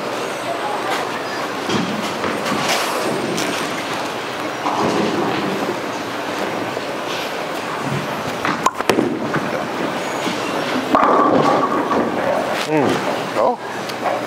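Bowling ball delivered onto the lane with a knock, rolling, then a loud crash of pins about two to three seconds later as it strikes. The busy din of a bowling alley, with other lanes and voices, runs underneath.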